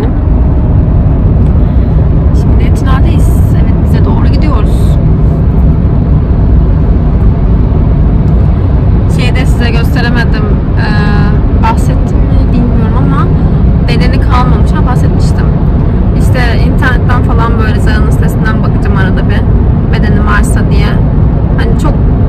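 Steady low rumble of engine and tyre noise inside a moving car's cabin, with stretches of quiet talk over it.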